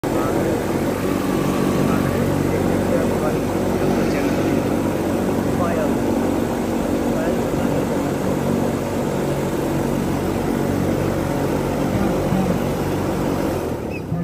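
A steady engine drone, with faint voices under it, cutting off abruptly just before the end.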